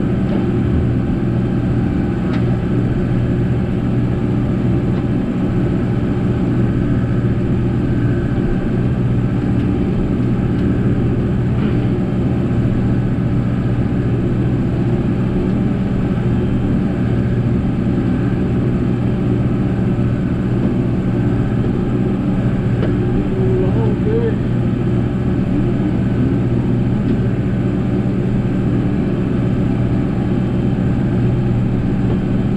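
New Holland 7740 tractor's diesel engine running steadily at working speed while it mows pasture with a bush hog rotary cutter, loud and even throughout.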